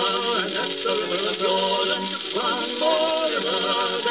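An old 78 rpm record playing a sung novelty song with musical accompaniment, the sound cut off above the upper treble, with a steady hiss of surface noise under it.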